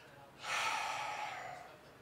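A man's long, audible breath out, starting about half a second in and fading away over about a second.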